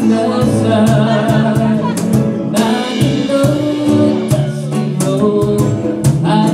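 Live band playing a pop-soul song: several voices singing in harmony over strummed ukuleles and guitar, low bass notes, and a steady beat of drum and cymbal hits.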